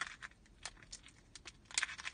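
Plastic bag of cleaning gel crinkling and crackling in the fingers as it is pulled open, a scatter of short crackles with the sharpest one near the end.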